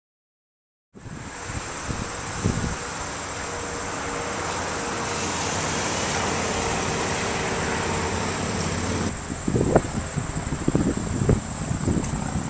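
Steady road-traffic noise with a thin, high insect chirring over it, starting about a second in. About nine seconds in the sound changes and a run of short, irregular thumps begins.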